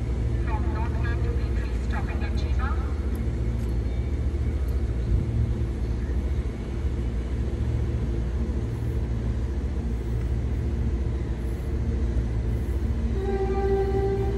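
Stationary Queensland Rail New Generation Rollingstock electric train standing at the platform, its onboard equipment giving a steady low hum. A brief pitched tone sounds about a second before the end as a second train pulls in.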